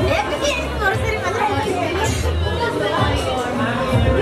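Several people talking over one another in a room, a steady mix of overlapping conversational voices.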